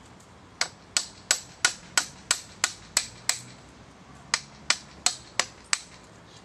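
Hand hammer striking a chisel into a wooden log while carving: sharp, evenly spaced blows about three a second, nine in a row, a pause of about a second, then five more.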